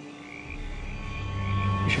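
A steady high trilling chorus of night creatures. From about half a second in, a low music drone swells in and grows louder.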